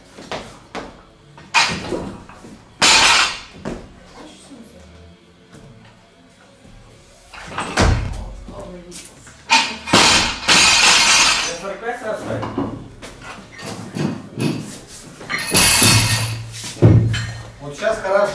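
Barbell with rubber bumper plates coming down onto a lifting platform: a few sudden thumps and clatters of plates, the heaviest and deepest thump about eight seconds in.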